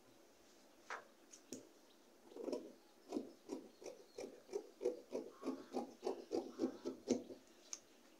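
Fabric shears cutting through organza folded into four layers: a run of short, crunchy snips, about three a second, starting a couple of seconds in and stopping just before the end.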